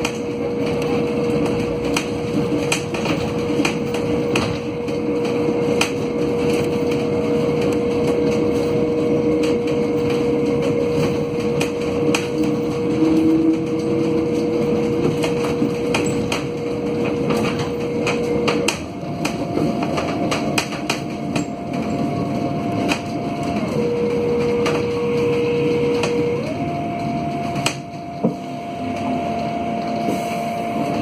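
Alstom Aptis battery-electric bus on the move, heard from the cab: a steady electric whine from its drive, which steps up in pitch a little past the middle, drops back, then steps up again near the end. Under it runs road rumble with frequent sharp rattles and knocks from the cabin fittings.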